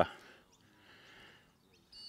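A man's voice trails off at the start. Then there is only faint, steady outdoor background noise, with a couple of faint high chirps near the end.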